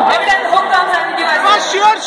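Concert audience close by: many voices talking and calling out over one another.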